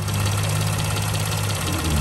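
Mercedes Sprinter diesel engine idling steadily, heard from under the open hood. The owner suspects the turbo resonator seal is leaking where it sits out of place; the van threw an underboost code.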